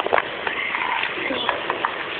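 Plastic fashion dolls being handled and moved about, making a string of light clicks and taps.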